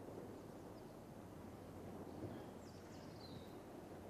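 Faint outdoor ambience with a low steady hum, a soft knock about halfway through, and a brief falling bird call shortly before the end.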